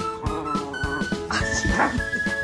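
Background music with a steady beat, over which a dog gives a wavering whine and then a short, sharp yelp about a second and a half in.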